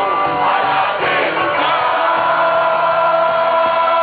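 Rock band playing live through a concert PA, with electric guitar and crowd voices. After about a second and a half the music settles into a long held chord that rings on steadily.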